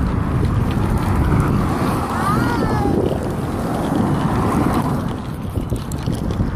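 Wind buffeting the phone's microphone as it is carried along at walking pace, a steady low rumble. About two seconds in there is a brief wavering high-pitched squeal.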